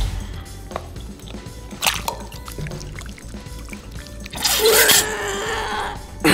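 Background music over liquid string slime being squeezed from a bottle into a bowl of activator water, dripping and pouring. A louder, brief burst comes about four and a half seconds in.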